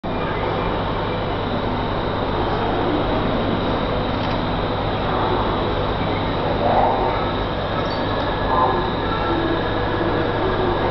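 Steady rumbling background noise of a public aquarium hall, with a constant low hum and faint voices of visitors now and then.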